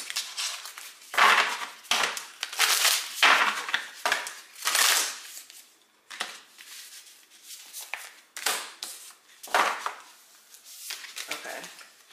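A deck of oracle cards shuffled by hand: irregular bursts of cards sliding and slapping together, with a card laid down on the table about midway through.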